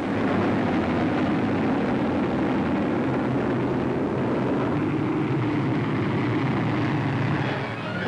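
Steady drone of bomber aircraft engines in flight.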